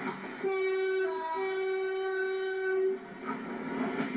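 Class 165 Chiltern Turbo diesel multiple unit sounding its horn once for about two and a half seconds, with a short change of note about a second in, over the running noise of the passing train.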